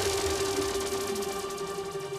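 Electronic music in a breakdown: a held synth chord slowly fading, with faint rapid ticking high above it and no heavy drums.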